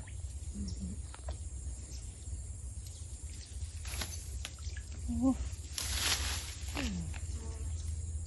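A short splash on still water about six seconds in, where a soft frog lure is being worked on the surface, with a few faint clicks before it. A low steady rumble lies under everything.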